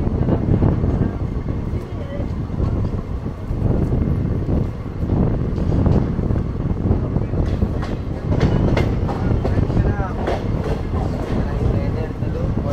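Passenger train coach running along the track: a steady rumble with the clatter of wheels on the rails, and voices in the background.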